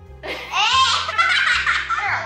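Children laughing loudly, starting about a third of a second in, over background music with a bass line.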